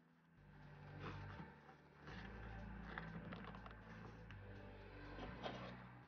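Faint rustling and light ticks of hands tying thin jute twine into a bow, over a low steady background rumble.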